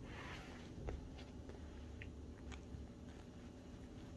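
A cat scuffling with a hand on a leather chair seat: soft rustling of fur and leather with a few small sharp clicks, the loudest about a second in.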